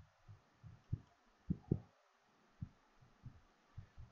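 Faint, irregular low thumps, about two or three a second, the strongest pair about a second and a half in, over a faint steady hiss.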